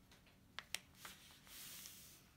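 Faint handling of a sheet of paper: a few light ticks, then a soft rustle near the end as the folded sheet is opened out flat.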